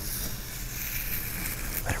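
Tape being peeled off the edge of a painting board, giving a steady, dry, high hiss.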